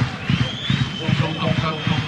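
Football stadium crowd noise, with one long, steady high whistle rising in shortly after the start and held throughout.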